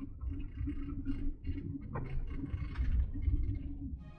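Camper van driving slowly, heard from inside the cabin: a continuous low road and engine rumble with a steady hum.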